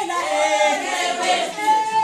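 Several women singing together without instruments, holding high notes that slide in pitch.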